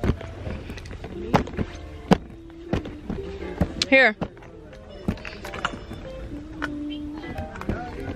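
Shop's background music plays over scattered sharp clicks and knocks from handling, with one short spoken word about halfway through.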